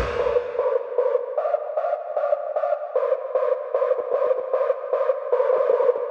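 Hard techno breakdown: the kick and bass drop out, leaving a pulsing mid-range synth riff, several pulses a second, whose notes step up and down a few times.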